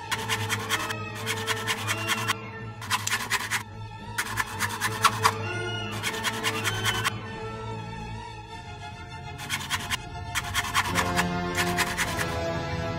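Background music over a series of knife strokes, about eight, each lasting under a second and irregularly spaced with a pause past the middle. A kitchen knife is slicing an apple and rubbing on the mineral-composite drainboard of a Plados Telma sink beneath it.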